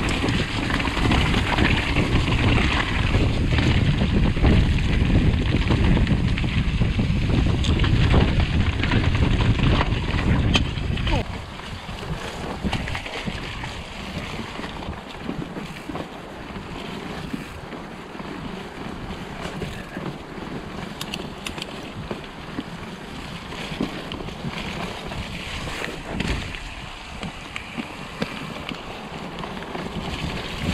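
Mountain bike riding a rough, muddy woodland trail: wind buffeting the camera's microphone, with tyre noise and scattered clicks and knocks from the bike over the rough ground. The heavy wind rumble drops off suddenly about eleven seconds in, leaving quieter rolling and rattling.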